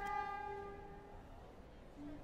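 A single honk from a vehicle horn: one steady pitched tone that starts abruptly and fades out after about a second.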